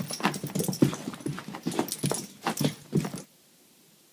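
A dog making short vocal sounds, about three or four a second, as it reacts to red laser-projector dots. The sounds cut off suddenly about three seconds in.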